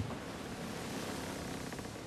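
Steady, even rushing of wind and water over open sea.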